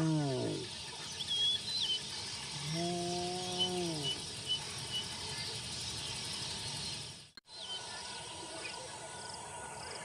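Two low, drawn-out calls from a spotted hyena, each holding one pitch and then dropping off. The first ends just after the start and the second comes about three seconds in. Crickets and other insects buzz steadily, birds chirp, and the sound breaks off briefly about seven seconds in.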